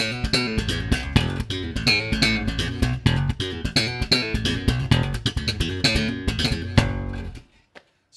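Fender electric bass played slap style through a small Fender combo amp: a fast funk groove of thumbed and popped notes with sharp, percussive attacks. It stops suddenly about seven and a half seconds in.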